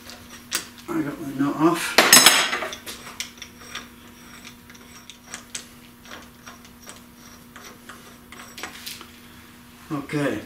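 A loud metal clank with a brief ring about two seconds in, then a run of light metallic clicks and clinks as the 1-5/16 inch socket and the castle nut are worked off the rear axle shaft by hand. A steady low hum sits underneath.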